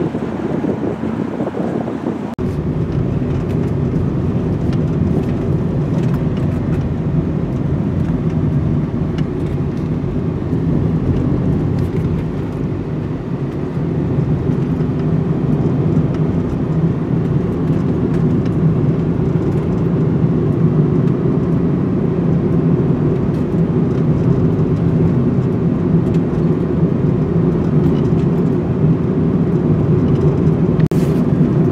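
Steady road and engine noise inside the cab of a Nissan NV200 van driving along a paved road. For the first two seconds or so, wind buffets the microphone, then the sound changes abruptly to the even cabin rumble.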